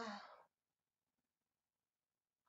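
A woman's short voiced sigh of relief, falling in pitch and ending about half a second in.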